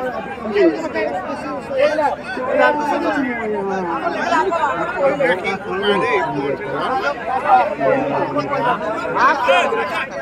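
Crowd of onlookers at a buffalo fight: many voices talking and calling over one another in a dense, continuous babble.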